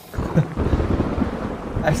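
Rain with a rolling rumble of thunder, a storm sound effect from a music video's intro, starting suddenly and holding steady.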